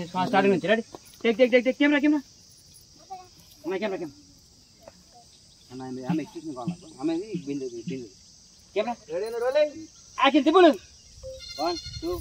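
A steady, high-pitched drone of insects, with people's voices calling out in short bursts over it.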